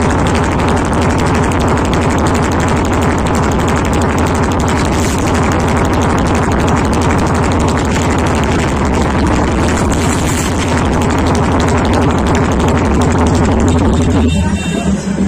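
Loud electronic dance music played through a large outdoor DJ speaker stack during a sound check, with a heavy, steady bass.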